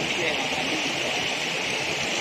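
Voices of people talking at a distance, over a steady high-pitched hiss.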